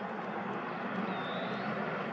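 Steady, distant roar of a twin-engine jet airliner cruising high overhead.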